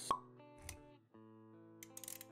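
Intro-animation sound effects over soft background music: a sharp pop with a brief ring just after the start, a soft low thud a little later, and a few quick clicks near the end, against held musical notes.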